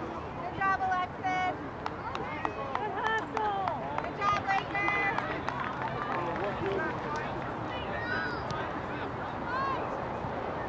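Overlapping shouts and calls from spectators and players at an outdoor youth soccer match, loudest in the first half, with a few sharp knocks among them.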